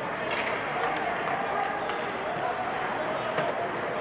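Ice rink game ambience during ice hockey play: a steady wash of skates on ice and crowd noise, with distant voices and a few faint knocks of sticks and puck.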